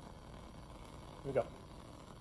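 A lit Bunsen burner burning with a steady hiss, its flame being used to sterilize an inoculating needle; a short spoken word cuts in about a second and a half in.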